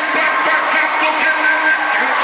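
Loud amplified worship music with long held notes, and the voices of a congregation mingled in it.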